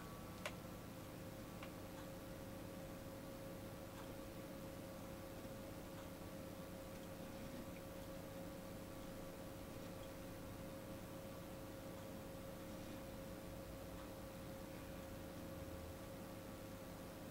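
Quiet room tone: a steady faint hum with a thin high note, with faint regular ticks about every two seconds and one sharper click about half a second in.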